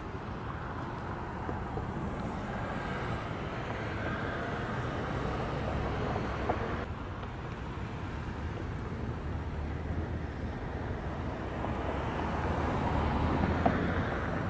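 Cars driving slowly past on a street: engine and tyre noise swelling as each passes close, loudest near the end.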